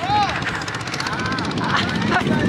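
Wind rushing and buffeting across the microphone on a fast-spinning chain-swing ride, with a woman's whooping, laughing calls that rise and fall in pitch near the start and again about midway.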